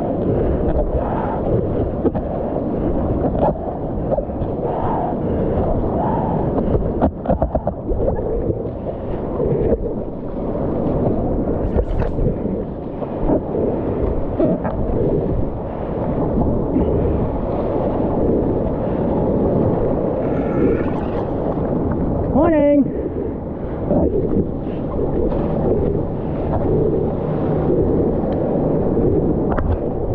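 Shallow reef water and breaking whitewater sloshing and washing around a GoPro held at the waterline, heard muffled through its waterproof housing, with water and wind buffeting the microphone. About two-thirds of the way through there is a brief pitched sound that sweeps down.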